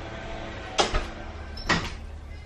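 Two short, sharp clicks or taps, about a second apart, over a faint steady background.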